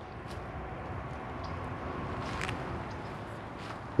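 Steady, low outdoor background noise with no distinct event, only a faint tick or two.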